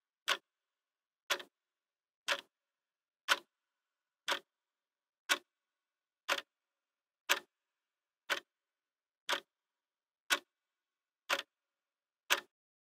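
A clock ticking once a second, each tick short and sharp, with dead silence between ticks.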